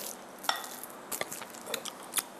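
A few faint, scattered clicks and smacks of a person eating a small morsel of food.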